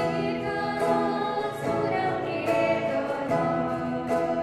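Church band performing a hymn: several voices singing together over acoustic guitar and electric bass guitar.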